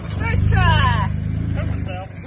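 A Jeep's engine running with a steady low drone as it crawls over the rocky trail. About half a second in, a voice calls out briefly, sliding down in pitch.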